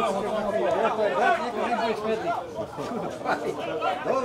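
Several people's voices talking and calling out over one another, the words not clear.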